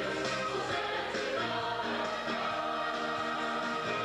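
Church choir singing a sustained, continuous passage from an Easter cantata.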